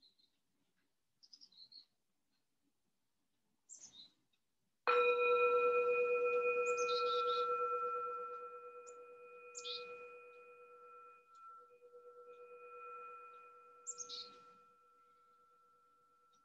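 A singing bowl struck once about five seconds in, ringing on with a few clear tones that fade slowly with a gentle wavering; it marks the end of the meditation. Faint short bird chirps come and go around it.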